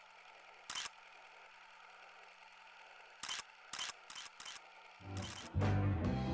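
Faint hiss with about five short, sharp clicks spread over the first few seconds. Band music with guitar comes in about five seconds in.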